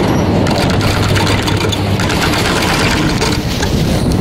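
Chairlift running, heard from a moving chair: a steady low rumble with rapid light clicking and rattling from the lift, and wind on the microphone.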